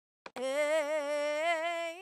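VOCALOID 5 synthesized singing voice auditioning the preset phrase "Amen": one long sung "amen" with vibrato, starting about a third of a second in and held for about a second and a half. A brief click comes just before it.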